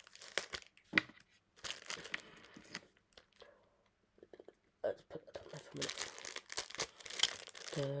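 Clear plastic packaging crinkling and being torn open by hand, in two spells of rustling with a pause about halfway. A voice starts humming right at the end.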